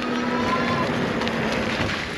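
Steady rushing wind noise on the microphone while riding an e-bike, with a faint whine underneath.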